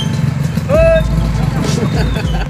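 Low, steady engine rumble of motorcycles running at idle, with a short high-pitched shout rising then held about a second in.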